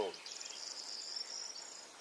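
An insect trilling high-pitched and quietly for about a second and a half.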